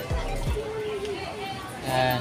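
Indistinct voices of people nearby with background music, and a few low bumps of the phone being handled.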